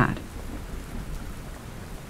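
Steady rain ambience, an even hiss of falling rain.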